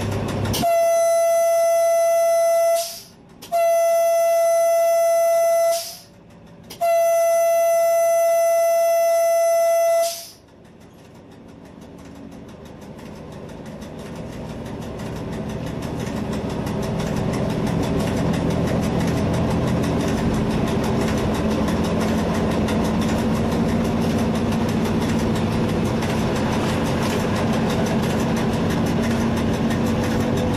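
Diesel train's horn sounded in three long blasts on a single note, the third the longest, as the train crew's salute. Then the train's running noise rises and settles into a steady drone as it picks up speed.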